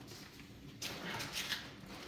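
Crinkling rustle of a silver metallized-film blimp envelope being turned over by hand, starting about a second in and lasting about a second.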